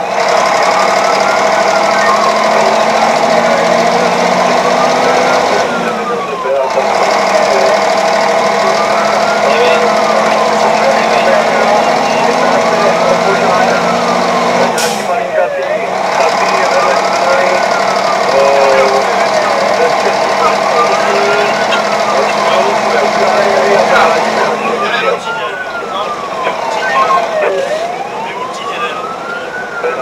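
Fire engine's siren wailing, sweeping slowly up and down about every four seconds, heard from inside the cab while the truck is driven on an emergency call. The truck's engine runs underneath it.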